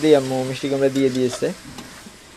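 Speech for the first second and a half, over pumpkin chunks sizzling as they fry in an iron karahi, with a metal spatula stirring and scraping them. After the voice stops, only the quieter frying sizzle and small scrapes remain.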